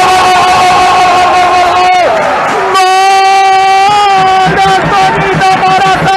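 A sports commentator's long, held goal shout ('gooool'): one sustained note that slides down and breaks off about two seconds in, followed by a second long held shout, then shorter excited calls, over crowd noise.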